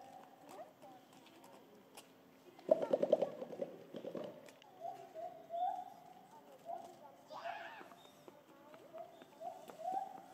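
Western lowland gorilla beating its chest: a rapid run of hollow pops lasting about a second and a half, a few seconds in.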